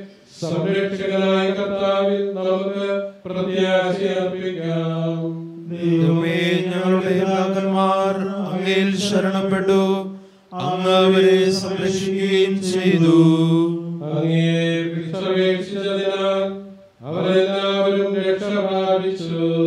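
A man's solo liturgical chant: one voice singing long phrases on a few held pitches, with short breaths between phrases about every three to four seconds.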